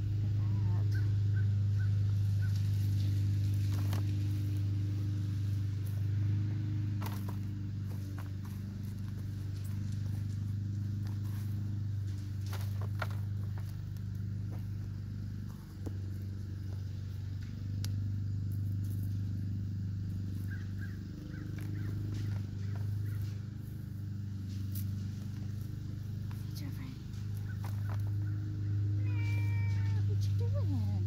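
Hands digging and rummaging through loose potting soil in a plastic container, with scattered rustles and clicks, over a steady low hum. A cat meows near the end.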